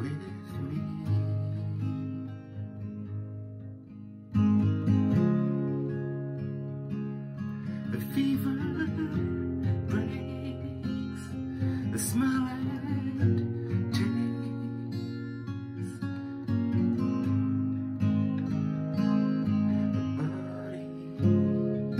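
Acoustic guitar with a capo, strummed chords ringing on. The playing eases off, then comes back in loud about four and a half seconds in and stays full to the end.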